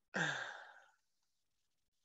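A man's breathy sigh, a single falling exhale lasting under a second.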